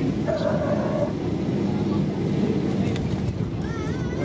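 Cabin noise of a Boeing 737-800 rolling out on the runway after landing: a steady, loud, low rumble from its CFM56 engines and from the wheels on the runway.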